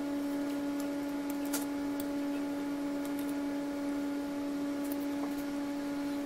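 A steady electrical hum at a few hundred hertz with fainter overtones above it, holding one pitch, with a few faint light clicks.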